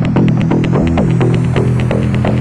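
Electro house track: a steady, loud low synth drone under fast, even hi-hat ticks, with short downward-bending synth notes and a high hiss that rises slowly in pitch, building up.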